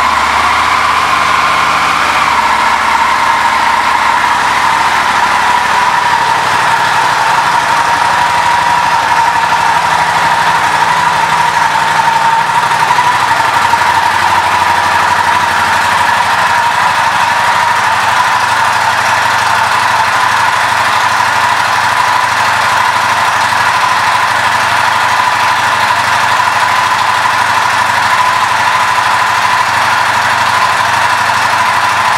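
Buell 1125CR's liquid-cooled Rotax 1125 cc V-twin idling steadily, with a constant whine over it. The idle settles a little lower after about two seconds and again around thirteen seconds in.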